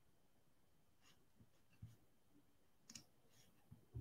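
Near silence: room tone with a few faint, widely spaced clicks from working a computer.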